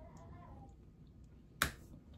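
A faint hum while chewing, then about one and a half seconds in a single sharp click made with the hands, the loudest sound here.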